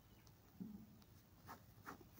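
Ballpoint pen writing on paper, very faint: a few short scratching strokes, the clearest about one and a half and two seconds in. A brief soft low sound comes a little after half a second in.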